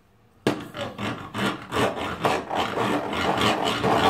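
A plastic toy saw scraped back and forth against a plastic toy workbench: a run of quick rasping strokes that starts suddenly about half a second in and keeps going.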